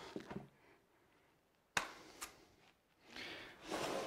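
Drywall joint compound being taken up with a putty knife onto a metal hand trowel: a sharp click a little under two seconds in, a lighter one just after, then a soft scraping of compound on metal that builds near the end.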